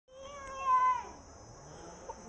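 A single high, drawn-out meow-like call lasting about a second and falling in pitch at its end, over a steady high hiss.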